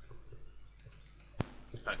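A single sharp click about one and a half seconds in, over a faint low hum, with a man starting to speak near the end.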